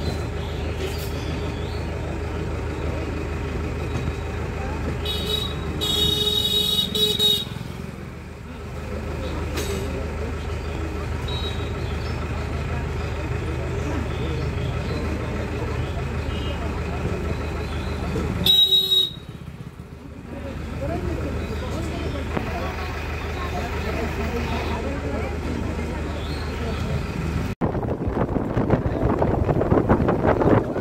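Steady vehicle engine hum with a horn tooting about five seconds in, held for two or three seconds, and a shorter toot near twenty seconds. Near the end, the sound cuts to wind buffeting the microphone.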